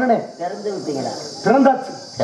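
A performer's voice through the stage microphones, in two short phrases, with a steady high-pitched cricket chirring behind it.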